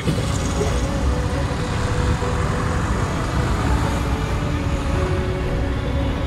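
Steady road traffic noise, a continuous low rumble of passing vehicles.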